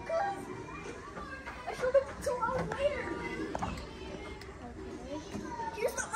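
Children's voices talking and chattering, too indistinct for words to be made out.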